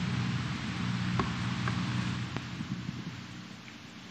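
Background noise of a large tented hall picked up through the lectern microphone: a steady hiss with a low hum, a few faint clicks, the hum fading out after about three seconds.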